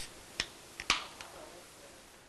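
Four or five sharp, quiet clicks at uneven spacing in the first second and a half, the loudest just before one second in.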